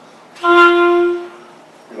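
Clarinet playing one held note for about a second, with the reed set way over to the side of the mouthpiece, the misaligned reed placement often found on students' instruments.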